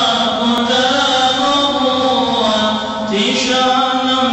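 Male chanting of a devotional Islamic mevlud hymn, sung into a microphone in long, drawn-out notes.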